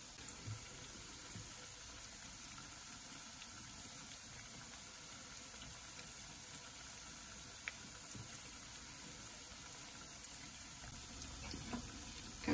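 Zucchini fritters shallow-frying in hot oil in a pan: a steady, fairly quiet sizzle with a few faint crackles.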